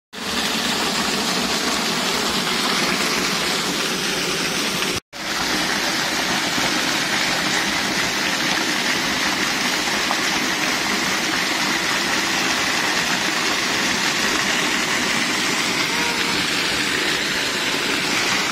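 Waterfall pouring close by: a steady, loud rush of falling water, broken off for a moment about five seconds in.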